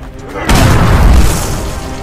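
A single booming gunshot, added as a film sound effect, about half a second in, its deep rumble dying away over about a second.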